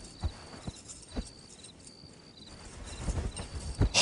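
Footsteps on a hard floor, a few scattered steps that bunch up and get louder near the end, over crickets chirping steadily in the background.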